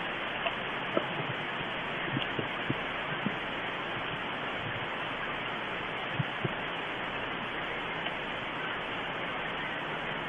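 Steady hiss with a few faint, short snips of scissors cutting leaf stems off a pepper plant, most of them in the first few seconds and a pair a little after six seconds.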